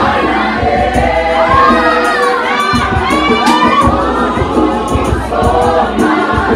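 A youth choir singing and dancing while the crowd cheers, with a burst of high rising-and-falling whoops and shrieks between about one and a half and three and a half seconds in. Repeated low thuds run underneath.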